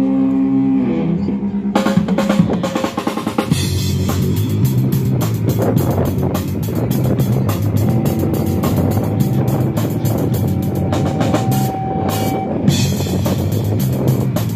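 Live hardcore punk band on electric guitars and drum kit. A held guitar chord opens it, the drums come in about two seconds in, and then the whole band plays fast and dense.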